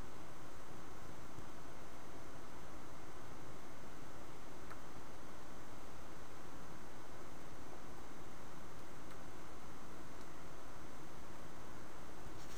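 Steady, even background hiss with a faint high whine: the recording's noise floor, with nothing else happening.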